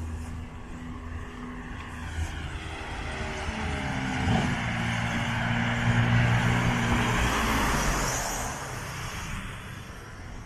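A car passing on the street: engine note and tyre noise grow louder to a peak about six seconds in, then fade away.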